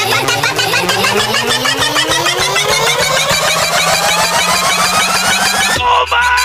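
DJ build-up in an electronic dance-music set: a tone sweeps steadily upward over about six seconds above a fast, even pulse, then cuts off abruptly just before the end.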